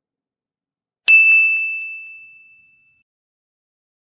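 A single bright, bell-like ding about a second in, ringing out and fading over about two seconds.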